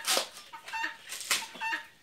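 Helmeted guinea fowl giving several short repeated calls, its 'tô fraco' call. Two brief ripping swishes mix in as coconut husk fibre is torn away by hand.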